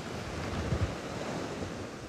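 Ocean surf washing onto a beach in a steady roar of noise, with wind rumbling on the microphone, briefly stronger a little under a second in.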